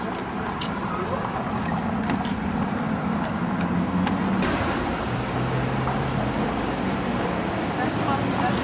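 City street traffic: cars and other motor vehicles running past in a steady mix, with a low engine hum standing out for about a second past the middle, and indistinct voices of passers-by.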